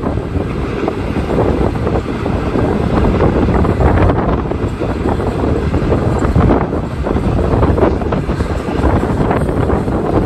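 Strong wind buffeting the microphone, covering a freight train of autorack cars rolling past.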